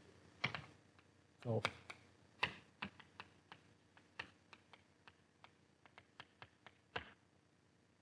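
Chalk writing on a blackboard: a string of faint, irregular taps and clicks as the chalk strikes and moves across the board.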